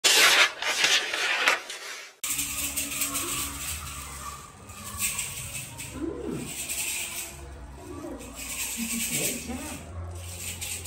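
A short, loud intro sound over the opening, cutting off about two seconds in. Then a kayamb, a flat wooden box rattle, is shaken in short bursts among young children's voices.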